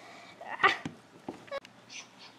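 A short, breathy "ah" from a voice about half a second in, followed by a few light clicks of plastic toy figures being handled.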